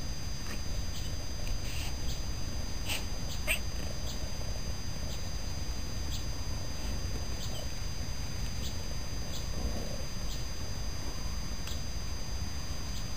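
A saluki and a cat play-fighting on grass: a few small clicks and scuffles from mouthing and pawing over a steady low background rumble, with the sharpest clicks about three seconds in.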